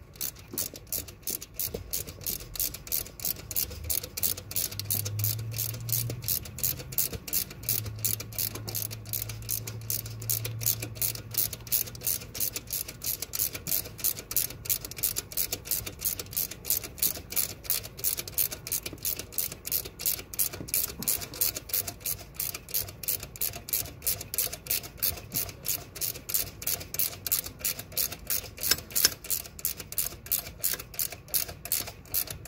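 Socket ratchet wrench clicking in a steady, even rhythm, a few clicks a second, as its pawl ratchets on the return strokes while turning an engine-mount bolt.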